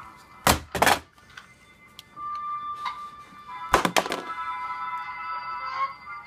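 Two pairs of sharp knocks, about half a second in and again near four seconds, like toys being bumped against a shelf. From about two seconds in, a thin electronic tune of steady held notes plays.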